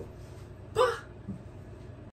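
One short voiced exclamation about a second in, over low room tone.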